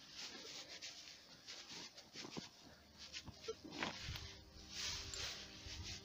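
Faint, irregular scraping and rustling of a hand digging through dry soil and grass stems.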